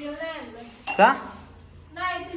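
People talking, with a short metallic clink about a second in from a steel tumbler set down on the tiled floor.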